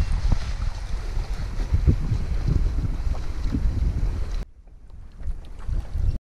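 Wind buffeting the camera microphone in uneven, rumbling gusts at the shoreline; about four and a half seconds in it drops suddenly to a much quieter background.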